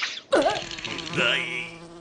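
Cartoon sound effect of a housefly buzzing: a steady drone with a wavering pitch that starts about a third of a second in.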